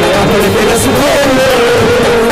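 Procession brass band playing: a held, wavering melody line over drums, with a cymbal crash about a second in.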